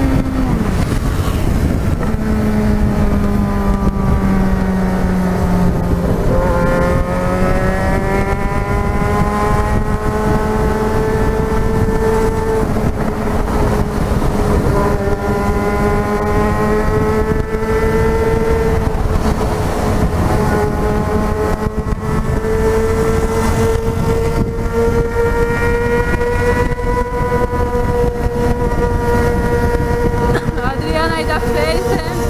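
Yamaha XJ6's inline-four engine at highway cruising speed, heard from the rider's seat under a steady rush of wind noise. The engine note drops about a second in, climbs gently a few seconds later, then holds nearly steady.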